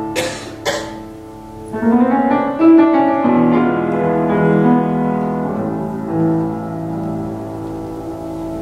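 A grand piano plays the instrumental introduction to a Russian romance: slow, sustained chords and melody. Two short bursts of noise come in the first second.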